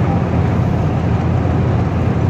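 Steady road noise inside a four-wheel-drive Honda's cabin while driving: a low, even rumble of tyres and engine with a fainter hiss of wind over it.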